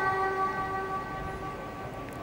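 The last of a boy's long held note of Quran recitation through a microphone, dying away over the first second or so. It leaves a pause with only a low, steady background hiss.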